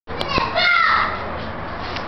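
A toddler's high-pitched voice: a short babbling call in the first second that falls in pitch at its end, after a couple of clicks at the very start.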